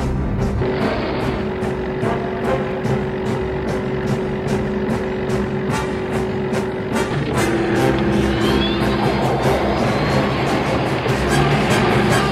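Film soundtrack: music mixed with a car engine running at speed, with sharp ticks keeping a steady beat.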